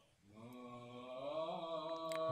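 Background music of a slow chanted voice fading in after a moment of silence, holding one sustained note that glides slightly upward about halfway through.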